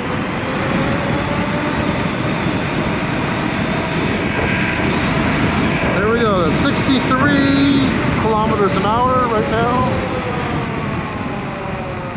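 Wind rushing over the microphone and road noise while riding a Kukirin G3 Pro dual-motor electric scooter, with a faint steady whine from the motors underneath.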